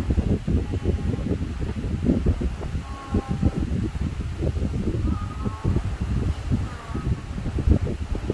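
An uneven low rumble of moving air buffeting the microphone, with a few faint short tones in the background.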